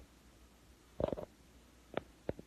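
Typing: a quick cluster of short taps about a second in, then a single tap near the end.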